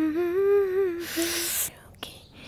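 A woman humming a few notes of a tune: one long note that wavers up and down, then a short note about halfway through. A brief hiss comes near the middle.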